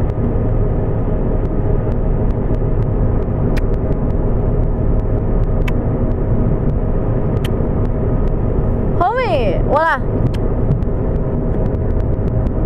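Steady road and engine noise inside a moving car's cabin. About nine and ten seconds in, a young child gives two short high-pitched vocal sounds, each rising then falling in pitch.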